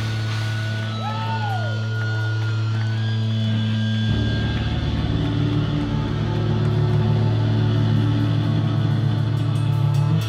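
Live band playing loud, heavy rock: a held, droning guitar chord with thin high whining tones over it, which grows denser and louder in the low end about four seconds in as the band plays harder.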